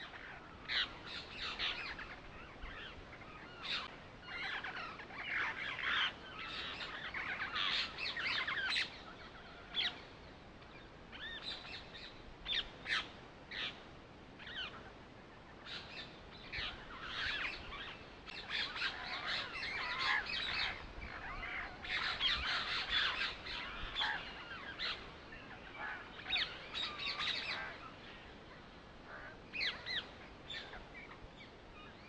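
Birds chirping and calling, with many short overlapping calls that come and go in clusters.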